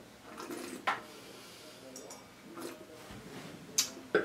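Faint mouth sounds of a man tasting a mouthful of red wine, with a sharp click about a second in. Near the end a short sharp tap, the wine glass being set down on the table.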